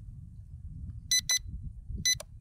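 A quick double beep from an electronic beeper about a second in: two short, high-pitched tones, over a low background rumble.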